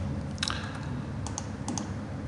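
A few light, sharp clicks of a computer mouse: a single click about half a second in, then two quick pairs of clicks later on.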